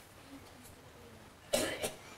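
Quiet room tone, then a person coughs about one and a half seconds in: a short double cough.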